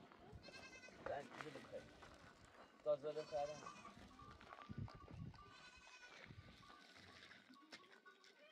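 Goats bleating: three wavering calls, roughly three seconds apart.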